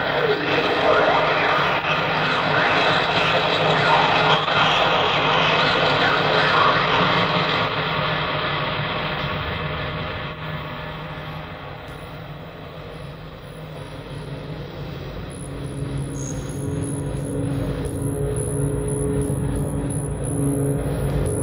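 Live industrial electronic music on an old bootleg tape recording. A dense, noisy wash of synthesizer sound with sweeping tones fades down near the middle. Then a low sustained drone with higher held tones builds back up.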